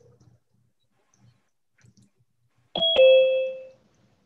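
A two-note chime, a ding-dong falling in pitch, struck about three quarters of the way through and ringing out for under a second.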